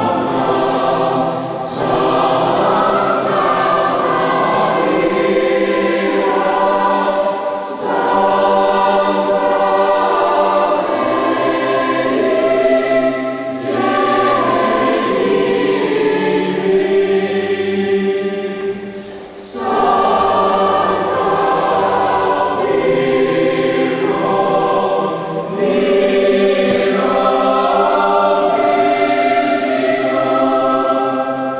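Children's choir singing together, in phrases broken by short pauses for breath about every six seconds.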